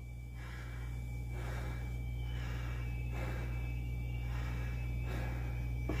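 A man breathing hard and rhythmically, about one breath a second, still winded from his workout, over a steady low hum.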